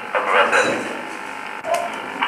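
Indistinct talk in a room over a steady background hiss, with a short sound near the end.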